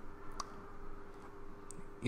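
Computer mouse clicking: one sharp click a little under half a second in, then two fainter ticks later, over a faint steady hum.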